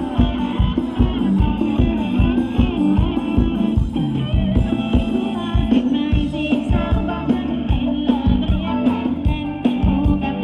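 Live band playing dance music, with a drum kit keeping a steady beat under a singing voice.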